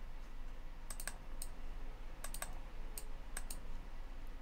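A few sharp computer mouse clicks, some in quick pairs like double-clicks, over a low steady hum.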